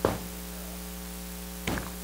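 Steady electrical mains hum in the recording, a low buzz with a stack of overtones, broken by one short sound right at the start and another near the end.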